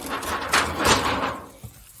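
Aluminium foil lid being pressed onto a foil pan: a crinkling, scraping rustle for about a second and a half that then dies down.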